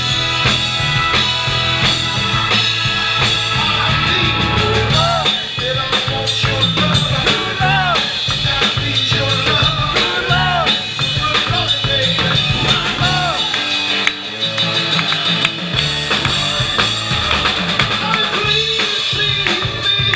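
Live band playing: a Hammond New B-3 Portable organ over a drum kit, with a man singing into the microphone.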